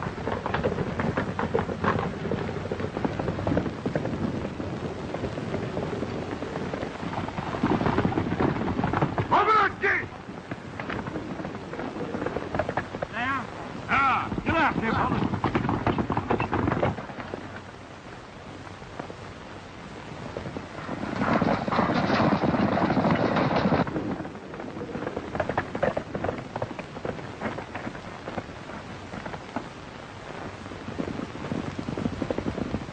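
Horses galloping, a dense patter of hoofbeats, with men yelling in short bursts about ten and fourteen seconds in and a louder stretch of commotion a little past twenty seconds in.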